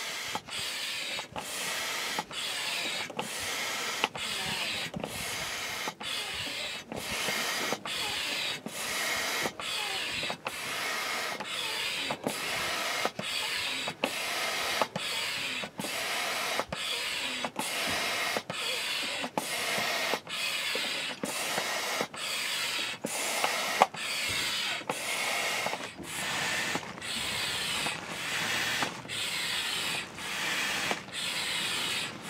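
Double-action hand air pump being worked in steady strokes to inflate a float tube's main bladder: a rhythmic hiss of air and rubbing of the piston, with a short break at each change of stroke, a little more than once a second.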